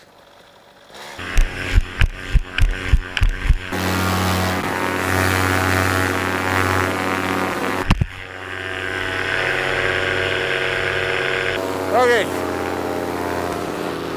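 Polini 190 two-stroke paramotor engine on a cold morning start: it fires in a string of uneven pops for a couple of seconds, then catches and runs steadily. A sharp knock about eight seconds in briefly breaks the running, which then carries on steadily.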